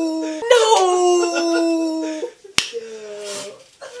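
A man's long, drawn-out howl of dismay at a wrong guess, sliding slowly down in pitch. It comes twice in a row, then a sharp click and a shorter, quieter falling cry.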